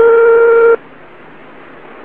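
A single steady telephone tone on the line, lasting about a second and cutting off sharply, followed by a steady faint hiss of the phone line.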